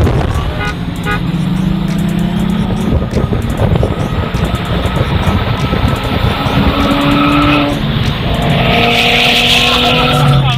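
Cars accelerating hard at full throttle, heard from inside a car. The engine note climbs steadily in pitch, drops back at gear changes about three and eight seconds in, and a burst of hiss comes near the end.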